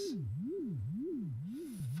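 Elektron Digitakt sampler playing a pure low test tone whose pitch an LFO on the tune parameter sweeps up and down in an even zigzag, about two sweeps a second.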